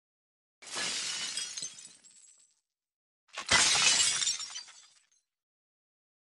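Two crash sound effects, each starting suddenly and fading out over about a second, the second one louder, about three and a half seconds in.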